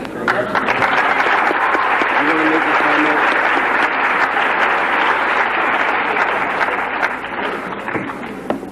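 Audience applauding, a dense steady clapping that eases off near the end, with a brief voice heard through it about two and a half seconds in.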